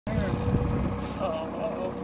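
Faint voices over a low rumble and a steady hum. The rumble is strongest in the first second, then eases.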